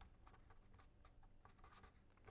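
Very faint sound of a pen writing a word on paper, light scratches and ticks over a quiet room.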